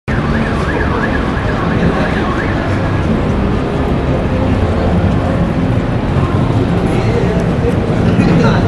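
Loud, steady din of a busy subway station, a low rumble mixed with crowd noise. Some high, wavering squeals come through in the first few seconds.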